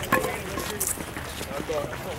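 Indistinct talk and calls from several people, faint and overlapping, with a single short knock just after the start.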